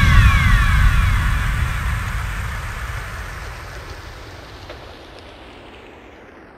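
The closing tail of an electronic dance track: after the beat stops, a wash of white noise with a few falling synth sweeps and a low rumble in the first second or two, all fading out steadily.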